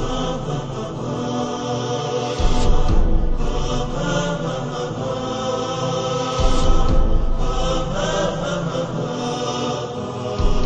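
Programme intro music: a held, drone-like chanting voice over sustained tones, with deep low hits about 2.5 and 6.5 seconds in.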